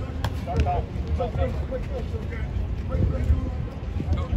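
Distant voices of players and coaches talking and calling out across an outdoor football practice field, over a steady low rumble, with one sharp click shortly after the start.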